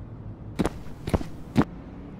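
Three sharp knocks about half a second apart, the last the loudest, over a steady low hum.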